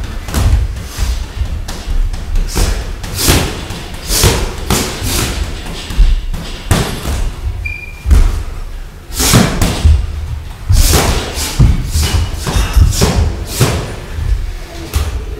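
Boxing gloves landing on gloves, arms and headgear during sparring, mixed with boxers' footsteps stamping on the ring canvas: a long run of irregular thuds and slaps, some in quick clusters of two or three.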